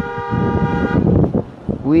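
A vehicle horn held in one steady note for about a second, stopping about a second in, over the rumble of a moving vehicle.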